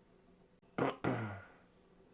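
A person makes one short throat sound about a second in: a sharp burst, then a brief voiced tail that falls in pitch.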